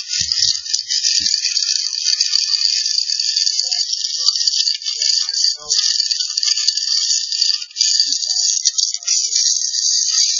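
Continuous scratchy rattling and scraping of a chimney inspection camera moving through a flue and rubbing against the liner walls, with a couple of brief breaks in the middle.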